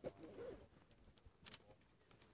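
Near silence with a short, faint dove coo in the first half-second, then a few faint clicks.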